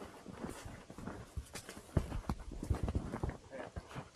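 A horse walking down a packed-snow path: an uneven run of muffled hoof falls, a few each second.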